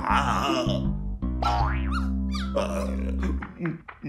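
Cartoon background music with a loud grimacing vocal outburst from a character at the start, followed by sliding, boing-like comic sound effects. The music stops shortly before the end.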